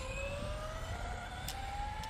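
Tamiya TT02 radio-controlled car's electric motor whining, rising steadily in pitch as the car accelerates away.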